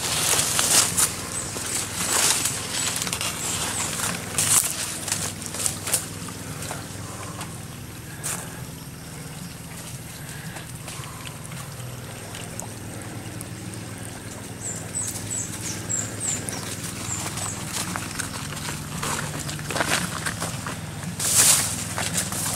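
Footsteps and rustling of plants and dry stalks brushing past a handheld camera, with irregular clicks and scuffs over a faint steady low hum. A few short high chirps come about two-thirds of the way through.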